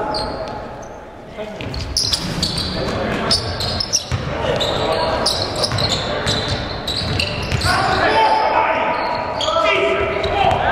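Basketball game in an echoing gym: a brief lull, then sneakers squeaking sharply on the hardwood court and the ball bouncing as the players scramble, with voices shouting louder near the end.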